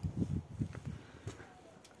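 A quick run of short, muffled low thumps through the first second, then it falls quiet apart from a couple of faint clicks.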